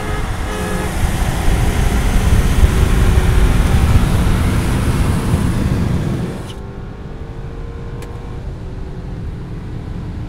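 Cabin noise inside a BMW F30 328i (2.0-litre twin-scroll turbo four-cylinder) under hard highway acceleration: a loud, dense engine and road rumble that builds for about six seconds, then drops suddenly to a quieter steady cruise noise.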